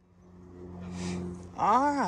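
A steady low hum fades in, with a short hiss about halfway. A man starts speaking near the end.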